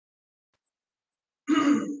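Near silence, then about one and a half seconds in, a person clears their throat once, briefly.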